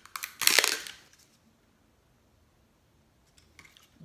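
A plastic clamshell of wax bars being handled: a run of small clicks and a short crackle about half a second in, then near silence with a few faint clicks near the end.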